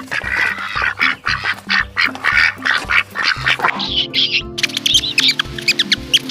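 A flock of ducks calling over background music with a steady beat. About four seconds in, the duck calls give way to high chirps over held music chords.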